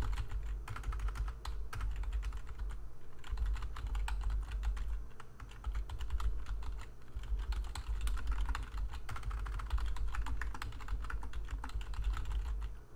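Typing on a computer keyboard: a fast, uneven run of key clicks with short pauses, and a low thud under the keystrokes.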